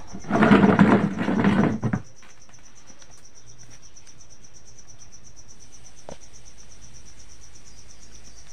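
Cooking oil glugging out of a plastic bottle into an empty aluminium kadhai in a loud burst lasting about a second and a half, then a steady high insect trill.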